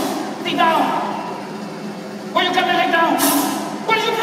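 A man's voice calling out twice: a short call about half a second in, then a longer, drawn-out call from about two and a half seconds.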